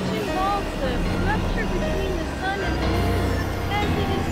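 Experimental synthesizer music: a steady low drone under many short tones that glide and bend up and down in pitch.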